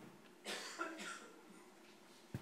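A single faint cough about half a second in, fading over about a second.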